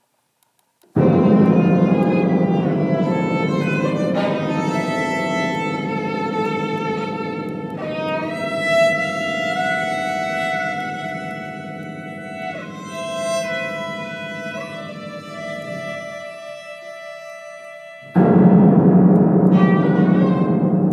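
Contemporary classical ensemble music, with sustained bowed-string notes over a dense low rumble. It comes in loudly about a second in, slowly thins and grows quieter, then a second loud entry arrives about two seconds before the end.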